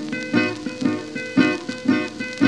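Acoustic guitar playing a country blues break between sung lines, with plucked notes about twice a second over a held ringing note, on a 1934 recording.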